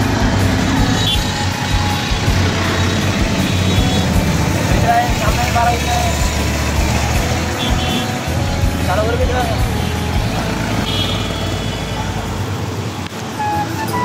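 Busy street traffic heard from a moving CNG auto-rickshaw: its engine running with steady road noise, and a few short horn honks from surrounding vehicles.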